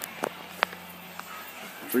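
A few brief, faint clicks over a low steady hum, then a man's voice starts right at the end.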